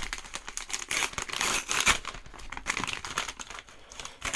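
A padded paper Jiffy mailer being handled and pulled open, with dense, irregular crinkling and rustling of the paper.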